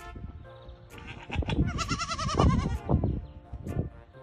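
Goat kid bleating: a long, quavering call about two seconds in, over background music.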